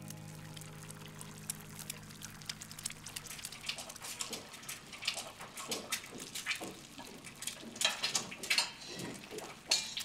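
Cooking at a stove: a utensil clinking and scraping against a pan in quick, irregular taps that grow busier and louder toward the end. Soft background music fades out in the first couple of seconds.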